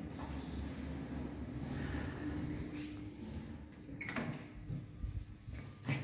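OTIS elevator's doors opening at a landing once the car has arrived: a steady low hum from the door mechanism, a sharp click about four seconds in, and another click near the end as the hinged landing door swings open.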